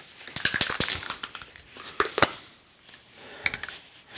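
Scattered light clicks and paper crinkling as a spray-paint can is handled over a sheet of newspaper, with one sharper click about two seconds in.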